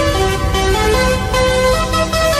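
Background electronic dance music: a synth melody stepping from note to note over a heavy bass line.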